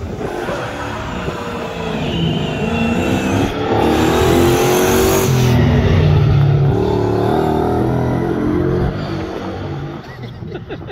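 A rally truck's engine approaching and driving past at speed, loudest from about four to seven seconds in, then easing off as it goes away.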